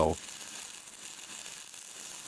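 Stick (MMA) welding arc burning on an E6013 rod, a steady crackling sizzle.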